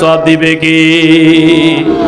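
A man's voice chanting into a microphone in the melodic style of a waz sermon, holding one long steady note that fades near the end.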